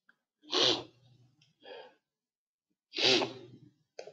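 A person sneezing twice, two loud sudden bursts about two and a half seconds apart, each trailing off into a softer sound.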